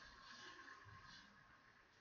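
Near silence, with the faint scratch of a pencil drawing a light line on paper in the first second or so.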